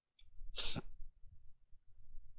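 A man's single short, hissing breath burst through the nose, a sniff or stifled sneeze, about half a second in, over faint low room rumble.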